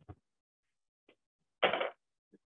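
A short metallic clatter of hand tools being handled on a table, about one and a half seconds in, after a faint click near the start.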